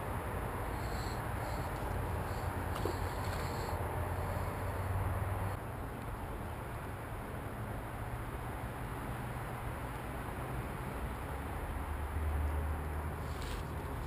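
Steady outdoor background noise with a low rumble, heavier in the first few seconds and again near the end, and no distinct event standing out.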